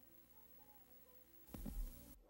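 Near silence: faint hiss from an old videotape recording of a TV station ID. About a second and a half in, it is broken by a short, sudden burst of noise with a low thump.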